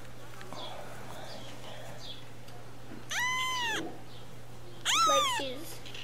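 Newborn kitten, eyes still closed, mewing twice: a high call that rises and falls, then a shorter one about a second and a half later.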